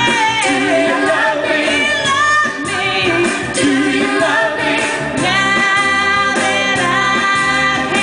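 Female vocal group singing soul music live, with several voices at once and long held notes in the second half over steady accompaniment.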